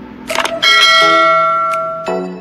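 Subscribe-and-bell end-screen sound effect: a few quick clicks, then a single loud bell chime that rings out and fades slowly.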